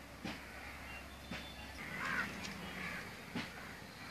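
Harsh bird calls, twice around the middle, with a few short sharp clicks scattered through.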